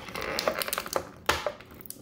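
Small plastic parts being handled off-frame, as a toy accessory is worked out of its packaging: rustling with a run of light clicks, then one sharper click just over a second in.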